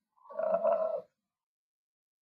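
A man's drawn-out hesitation sound, an 'uhhh' or 'mmm' lasting under a second, then dead silence.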